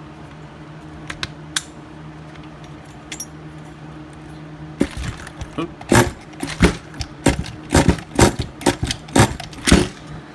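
Pull-starter on a small nitro RC car glow engine being yanked again and again. From about five seconds in come a dozen or so sharp, rasping pulls, one or two a second, and the engine does not catch, with a steady low hum underneath.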